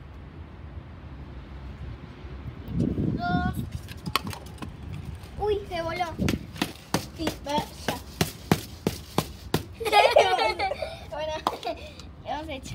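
A run of sharp taps and clicks on plastic, about two or three a second for several seconds, as small confetti pieces are shaken and tapped out of plastic tubs into a bowl. Low voices come in at times, louder near the end.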